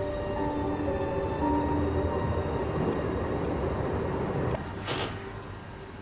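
Soft background music score of held notes that shift pitch every half second or so, over a low rumble. A brief swish comes about five seconds in.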